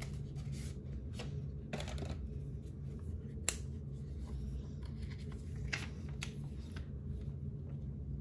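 Cardboard eyeshadow palette being handled and opened: scattered rustles and light clicks, with one sharper click about three and a half seconds in, over a steady low hum.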